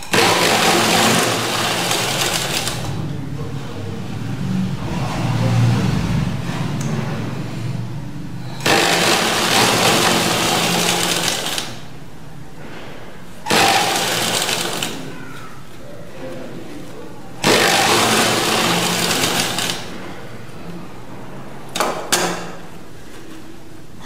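Electric sewing machine stitching a gold lace border onto net fabric. It runs in bursts: one right at the start, a longer stretch a few seconds later, then shorter runs, with a steady lower hum between them.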